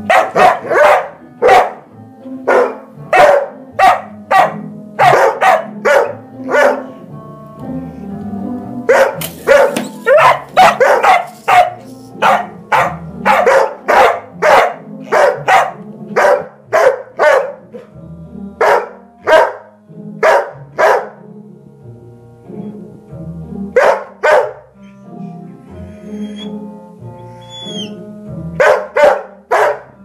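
A dog barking loudly and repeatedly, in quick runs of several barks with short pauses between the runs.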